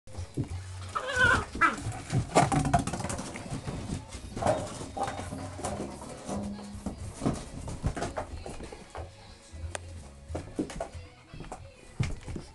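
English Springer Spaniel puppies chewing and tugging at a plastic pop bottle: a run of crackling plastic and knocks on the floor, with puppy vocal sounds in the first couple of seconds and again about four and a half seconds in.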